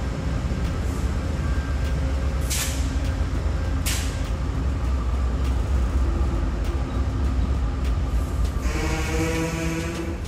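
Diesel rumble of Amtrak GE Genesis P42DC locomotives pulling slowly past at low speed, with two short air hisses about two and a half and four seconds in. A set of steady tones joins near the end.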